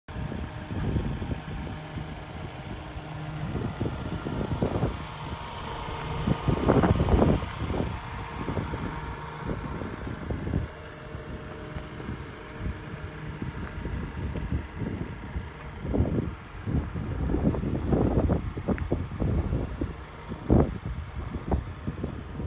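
Wind buffeting the microphone in irregular gusts, with a faint steady hum beneath.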